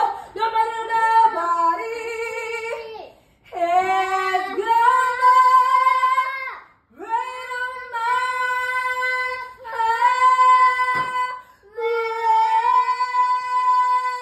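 A girl singing unaccompanied: four phrases of long held notes that slide into pitch, with short breaths between, the last a high note held steadily.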